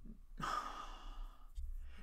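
A woman's audible breath, a soft sigh-like rush of air lasting about a second.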